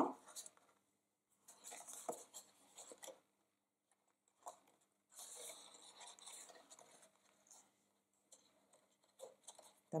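Faint rustling and scraping of stiff cardstock being lifted and folded by hand, in two short stretches with a few light taps.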